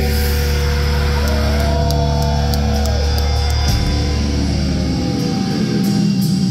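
Heavy metal band playing live through a club PA: distorted guitars and bass hold a sustained chord over drums and cymbal hits, with a wavering high guitar note. The low end drops out about five seconds in.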